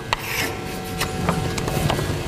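Chalk on a chalkboard: short scratchy strokes and a few sharp taps as a figure is written and underlined.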